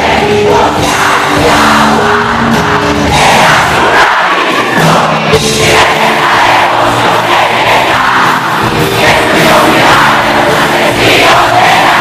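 Live rock band playing loud, with a crowd's voices mixed in, recorded from the audience; the bass drops out briefly about four seconds in.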